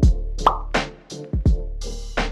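Background music with a drum-machine beat: deep kick-drum hits, crisp hi-hat strokes and a sustained bass line.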